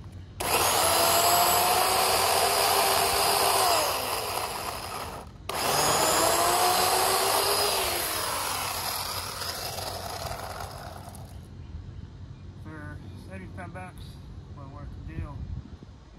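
Worx WG305 14-inch 8-amp corded electric chainsaw cutting a log in two runs. The motor starts about half a second in with a steady whine that drops as it winds down near four seconds, stops briefly, then runs again and winds down gradually over several seconds.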